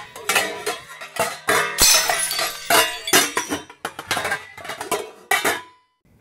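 A busy run of clattering, clinking knocks mixed with music, stopping shortly before the end.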